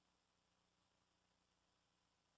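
Near silence: only a faint, steady low hum in the recording's background.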